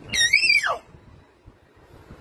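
A baby's single short, high-pitched squeal that rises slightly and then slides down, lasting under a second.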